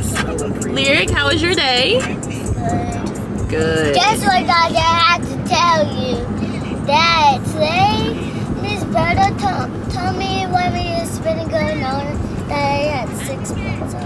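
A young child singing in high, wavering, gliding phrases, with a steady low hum underneath.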